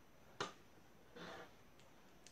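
Near silence, broken by one sharp click about half a second in and a short soft hiss a little after a second in.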